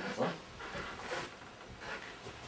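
A man's voice saying 'dziękuję' once, followed by a couple of short hissy noises in a small room.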